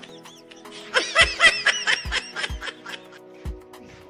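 Background music with a beat, with a burst of high-pitched laughter about a second in, lasting a second and a half.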